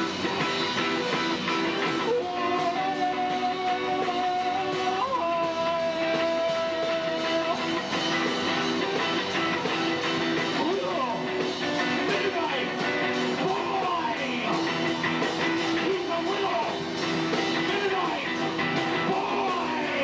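Live rock band playing: guitar over a steady drumbeat, with two long held notes a few seconds in and bending notes later.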